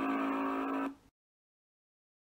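A steady, horn-like buzzing tone, held at one pitch, that cuts off suddenly about a second in.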